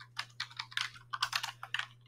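Typing on a computer keyboard: a quick, irregular run of keystrokes, several a second.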